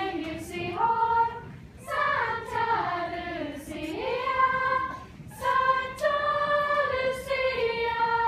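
Choir of girls singing a Swedish Christmas carol without accompaniment, in long, slow held phrases with short pauses between them.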